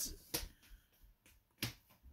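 Two short, faint clicks about a second and a quarter apart, over quiet room tone.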